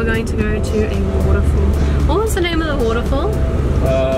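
Steady low rumble of a car's engine and road noise heard from inside the cabin, under background music and a voice.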